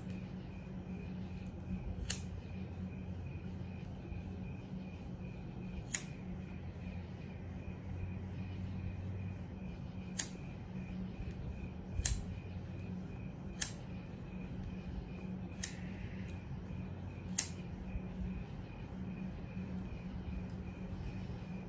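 Corn cob pipe being lit with a lighter and puffed on: faint sharp clicks every two to four seconds over a steady low hum.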